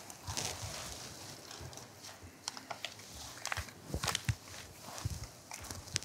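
A pencil drawing on paper on a clipboard: faint, irregular scratching strokes with a few light taps.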